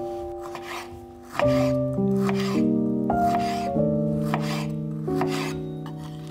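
Kitchen knife slicing through a peeled kiwi onto a bamboo cutting board, with short scraping cuts about two a second, over piano background music.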